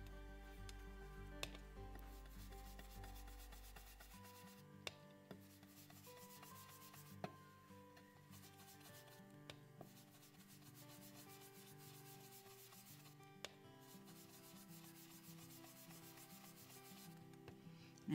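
Faint rubbing of an ink-blending brush being swirled over cardstock, with a few light taps.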